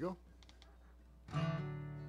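A chord strummed once on a capoed acoustic guitar about halfway through, left ringing and slowly fading.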